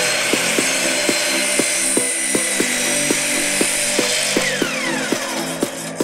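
Miter saw motor running at full speed with a high whine while its blade cuts through a walnut board. The whine falls away as the blade spins down near the end. Background music with a steady beat plays throughout.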